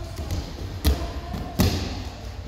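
Two dull thuds on a padded wrestling mat, about three-quarters of a second apart, as a child's hands and feet strike the mat during a round-off and somersault.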